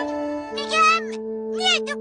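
Cartoon background music of steady held notes, with two short, squeaky, high-pitched utterances from an animated character's voice.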